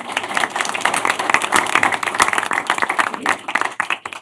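A roomful of people applauding, many hand claps at once, dying down near the end.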